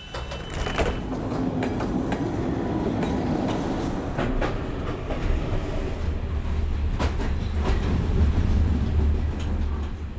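Passenger train running on the rails: a steady low rumble that grows heavier in the second half, with scattered clacks of the wheels on the track.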